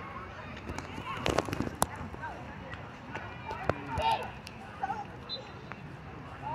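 Background hubbub of children's voices calling and shouting across an outdoor pool, with a few sharp knocks about one to two seconds in and again near four seconds.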